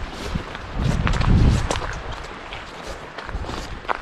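Footsteps on wet, grassy ground, with a low rumble about a second in.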